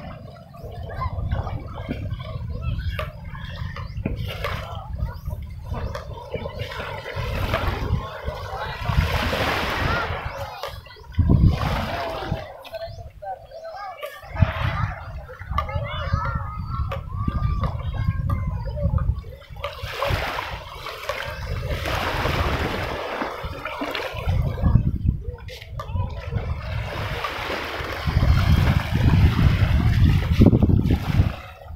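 Small waves washing onto a sandy shore, with wind rumbling on the microphone, louder in gusts about eleven seconds in and near the end. People's voices talk at times.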